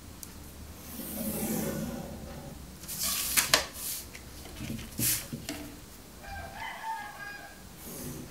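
A plastic pattern ruler is set down and slid against paper on a wooden board. It gives a few sharp clicks about three seconds in and again a couple of seconds later, with paper rustling. Behind it, a drawn-out pitched sound comes about a second in and another near the end.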